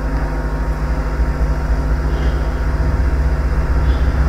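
A steady low hum with a slight fast flutter and no speech.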